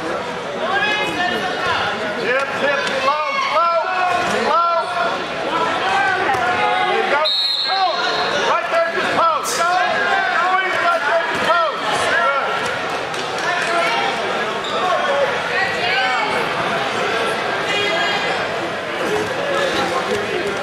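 Voices shouting and calling out over and over around a wrestling match, with a brief high steady tone about seven seconds in and a sharp click a couple of seconds later.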